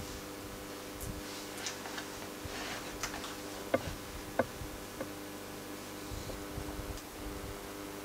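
A steady low electrical hum, several fixed pitches together, from a running valve Tesla coil and its power supply. A few faint clicks come through the middle.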